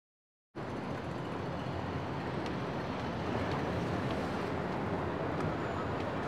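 Steady city traffic noise that starts abruptly about half a second in, with a few faint ticks over it.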